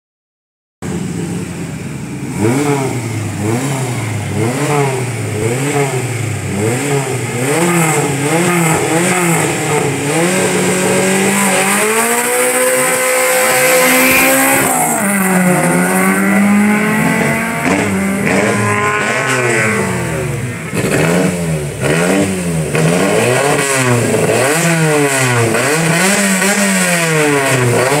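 Racing car engine revved up and down over and over, about one blip a second. About halfway through, a car climbs to high revs and holds them as it passes close by, with a sharp drop in pitch; then the quick blipping starts again.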